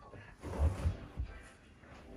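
Dull low thumps of a child's body and legs dropping onto a carpeted floor, about three in quick succession around a second in.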